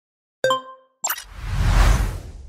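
Logo-animation sound effects: a short ringing chime about half a second in, then a click and a swelling whoosh with a deep low rumble that builds toward the end.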